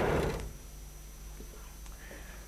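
Sliding chalkboard panel rumbling as it is pushed along its track, stopping about half a second in. After it stops there is only a low hum and a couple of faint clicks.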